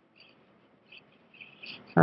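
A few faint, short, high chirps over near silence.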